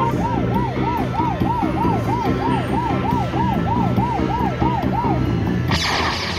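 Slot machine sound effect: a siren-like warbling tone rising and falling about three times a second over the machine's game music, the signal that the bonus pick round has awarded free games. It stops just after five seconds in, and a louder burst of sound comes near the end as the free-games screen starts.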